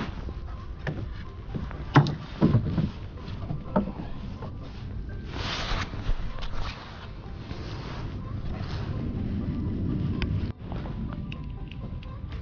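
Knocks and clatter of fishing gear being handled in a small wooden boat, with a few sharp knocks in the first four seconds over a steady low rumble.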